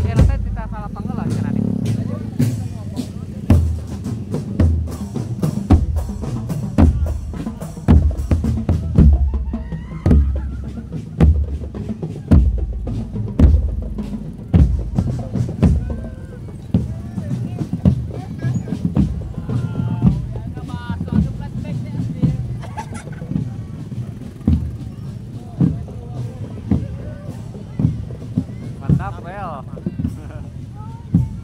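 Marching drum band's bass drums and snare drums beating a parade rhythm, with heavy bass-drum beats roughly once a second and lighter snare strokes between, amid crowd voices.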